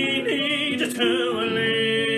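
A young singer's song on the soundtrack: long held sung notes with a clear vibrato, and a brief breath or consonant a little before a second in.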